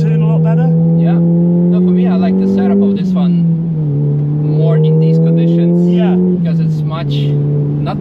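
Volkswagen Golf GTI's turbocharged four-cylinder engine accelerating hard, heard from inside the cabin. Its note climbs steadily and drops at two upshifts, about three seconds in and again about six seconds in.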